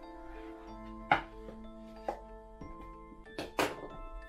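Soft background music with sustained tones, over which a few sharp knocks sound from handling the wooden table and tools on the workbench. There is a loud knock about a second in, a lighter one a second later, and a quick pair of knocks near the end.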